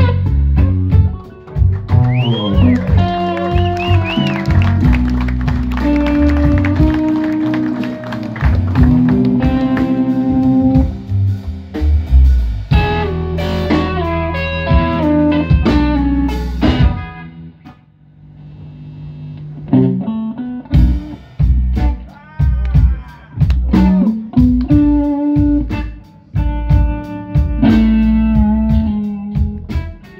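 Live blues-rock band: an electric guitar plays a lead line with string bends over electric bass and a drum kit. The band thins to a brief hush a little past halfway, then comes back in.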